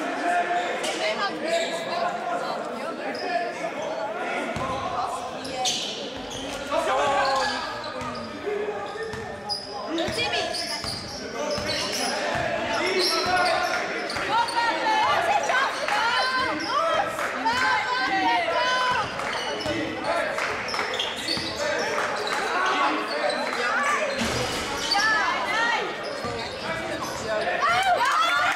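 Basketball being dribbled on a hard gym floor during play, with players calling out to each other, all echoing in a large sports hall.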